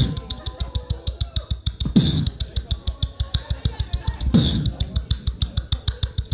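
Solo beatboxer performing an EDM-style routine into a handheld microphone: fast, even hi-hat clicks, about eight a second, over low kick thumps. A faint held tone runs under the first two seconds, and deep sliding bass sounds come in about two seconds in and again near the end.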